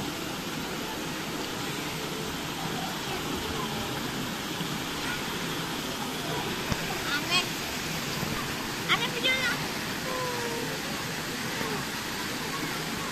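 Steady rushing and lapping of swimming-pool water, with faint voices now and then.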